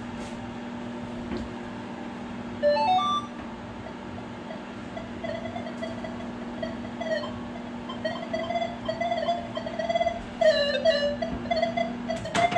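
Microwave oven running with a steady hum while a Minelab Equinox 800 metal detector held close to it sounds off. The detector gives a quick run of stepped beeps about three seconds in, then a wavering tone that grows stronger from about five seconds on. The oven's hum stops near the end.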